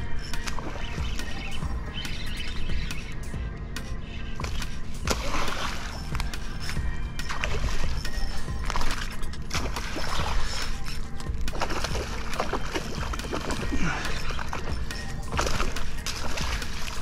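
A hooked tarpon thrashing and splashing at the water's surface while being played on light spinning tackle, in a string of irregular splashes, over a steady low hum.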